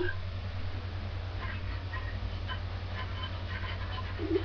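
Steady low hum of background room tone, with only faint, scattered small sounds and no distinct event.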